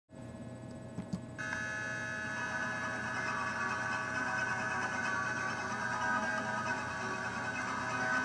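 A steady electronic hum of sustained tones; about a second and a half in, a cluster of higher tones comes in on top and holds. It is typical of the recording feedback the uploader apologises for in the GarageBand track.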